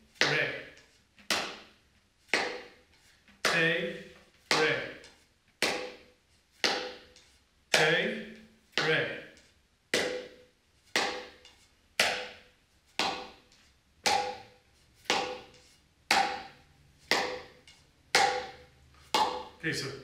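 Mridanga's small, higher-pitched head played with closed, muffled strokes in the basic 'te, re' exercise: a finger stroke, then the thumb stuck to the centre so it does not bounce. The strokes come evenly at about two a second, each with a short ring.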